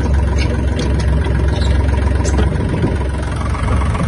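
Kubota L1-185 mini tractor's small three-cylinder diesel engine idling steadily, with a few faint clicks of handling over it.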